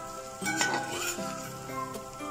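Metal spatula stirring and tossing noodles in a metal pan, with one louder scrape against the pan about half a second in, over background music with held notes.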